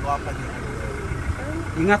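SUV engine running low and steady close by as the car moves off slowly.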